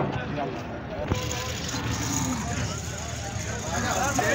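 Men's voices talking in the background over the steady low rumble of a vehicle engine, with a sharp knock at the start and another about a second in.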